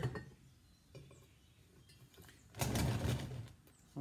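Cast-iron pitcher pump parts clinking and scraping as they are handled. After a quiet start there is a faint click, then a rough metallic clatter lasting about a second near the end.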